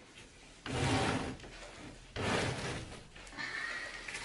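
Carpet being dragged out from under the wall edge by hand: two rough scraping pulls of under a second each, then a fainter one near the end.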